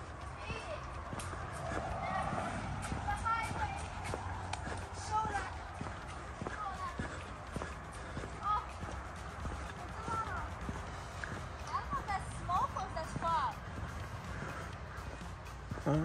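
Footsteps walking on a paved path, with a low steady rumble throughout and faint short high chirps here and there.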